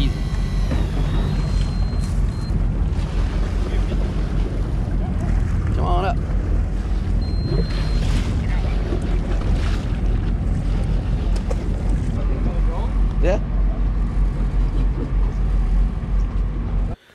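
Steady low rumble of the sportfishing boat's diesel engines running, with wind on the microphone and a couple of short shouts about 6 and 13 seconds in.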